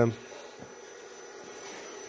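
Faint background hiss and room tone, with the tail of a man's speech at the very start.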